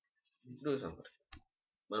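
A man speaks briefly, then gives a single sharp click of a computer mouse button a little over a second in, as text is selected in a code editor.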